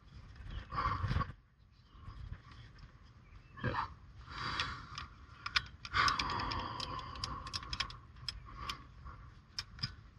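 Climbing rope being handled and pulled through metal anchor rings and carabiners while a top anchor is rigged for lowering: short bursts of rope rubbing, then a run of sharp metallic clicks and clinks in the second half.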